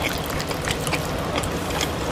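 Bare hands mashing and mixing rice with fish curry on a plate, a steady patter of small wet, sticky clicks.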